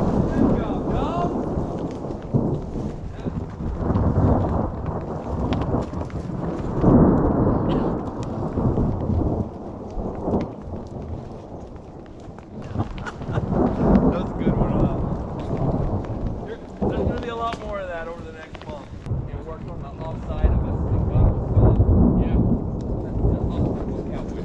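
Thunder: several long rolls, one after another a few seconds apart, each swelling and dying away.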